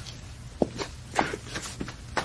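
A series of footsteps, a few short sharp steps a second, over a low background hum.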